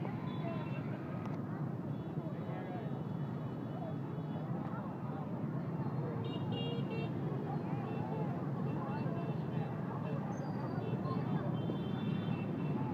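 Dense motorbike traffic jammed in a street crowd: a steady din of many voices and scooter engines, with horns tooting now and then, most plainly about six seconds in and near the end.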